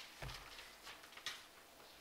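Quiet room tone with a soft low thump about a quarter second in and a faint tick a little past the middle.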